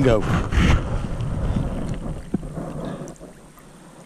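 Water sloshing as a black crappie is lowered by hand over the side of a boat and released into the lake, with wind rumbling on the microphone. The sound fades after about three seconds.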